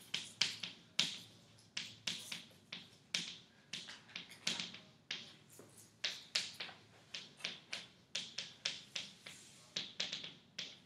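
Chalk writing on a blackboard: an irregular run of sharp taps and short scratches, about three or four a second, as letters are written.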